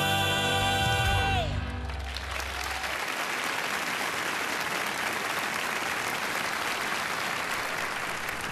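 A male vocal quartet holds the final chord of a gospel song, which ends with a downward slide about a second and a half in. The audience then applauds steadily.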